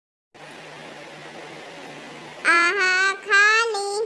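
A child's high voice reciting the Hindi vowel अः (aḥ) in a drawn-out, sing-song way: two held syllables with wavering pitch, starting past the middle, over a faint steady hiss and low hum.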